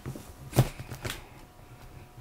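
Plastic toy figures being moved and knocked together by hand: a brief rustle, then a sharp knock about half a second in and a weaker one about half a second later.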